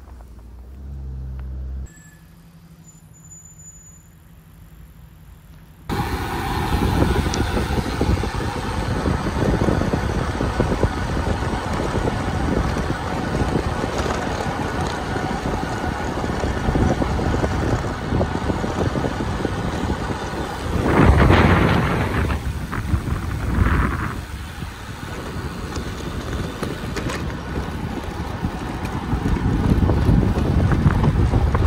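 Wind rushing over the microphone of a camera on a moving bicycle, a heavy low rumble with road noise. It starts abruptly about six seconds in after a few seconds of faint low hum, with a louder surge of rushing about twenty-one seconds in.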